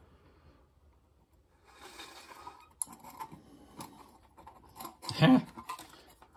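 Faint handling sounds: a short rustle about two seconds in, then a few light clicks and taps. The electric forklift motor stays silent and does not spin when the speed control is turned up; its tachometer still reads zero.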